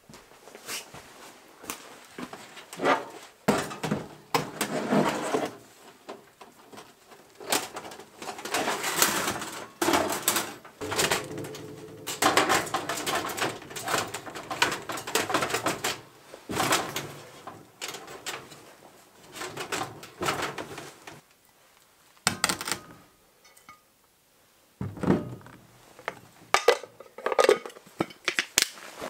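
Thin sheet-metal panels of a Coleman folding camp oven being unfolded and fitted together: irregular clanks, rattles and scrapes of metal on metal.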